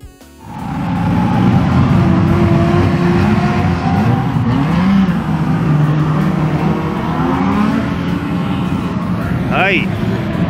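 Drift cars' engines running and revving together: a dense, continuous engine noise whose pitch rises and falls, with a brief high rising squeal near the end.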